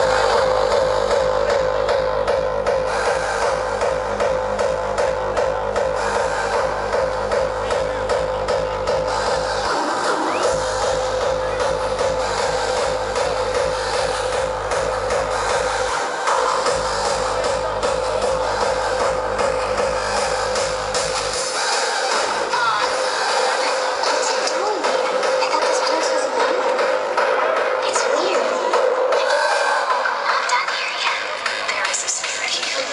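Hardstyle DJ set played loud over a festival sound system, heard from within the crowd: a steady, rhythmic kick drum under a sustained high synth note. The kick drops out briefly about ten and sixteen seconds in, then stops about two-thirds of the way through while the synth carries on.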